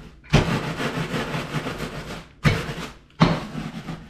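Wooden rolling pin rolled over a plastic zip-top bag of Cap'n Crunch cereal, crunching and crushing it to a fine crumb, in three strokes: one long pass of about two seconds, then two shorter ones.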